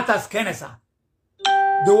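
An electronic chime sounds about one and a half seconds in, starting sharply and holding a steady ringing tone as a man's voice resumes over it.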